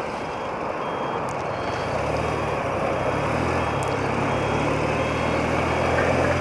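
Wind and road rush on a helmet microphone while riding an old BMW motorcycle. A steady low engine note comes in about two seconds in. A faint high beep repeats about every two-thirds of a second throughout.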